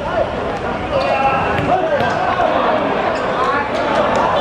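Players shouting to each other over a football match on a hard court, with several sharp thuds of the ball being kicked and bouncing.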